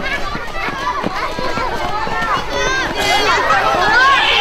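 A crowd of children chattering and calling out over one another in the open air, many voices overlapping at once.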